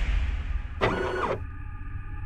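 Mechanical sound effects for an animated motorized hatch opening: a low rumble under a steady hum, with one short servo-like whir about a second in that rises, holds and drops away within half a second.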